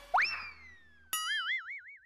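Comic sound effects: a tone that shoots up and slides slowly down, then, just after a second in, a boing whose pitch wobbles about five times a second.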